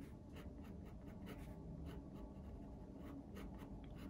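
Black pigment-ink fineliner pen scratching short shading strokes on cold-press watercolour paper, faint, about three strokes a second.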